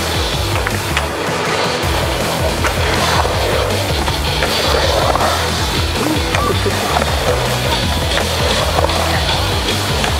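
Skateboard wheels rolling and carving across a concrete bowl and full pipe, a steady rolling rumble with small clicks, and the trucks grinding on the metal coping partway through. Music plays along underneath.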